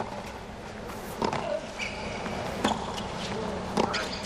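Tennis ball struck by rackets in a rally on a hard court: the serve right at the start, then three more crisp hits about every second and a half, over a steady crowd murmur.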